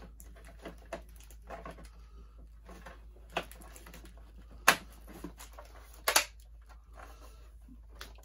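Hard plastic of a vintage Kenner Slave I toy clicking and knocking as its parts are handled and worked. Small scattered clicks throughout, with a few sharper snaps from about the middle on, the loudest about three seconds before the end.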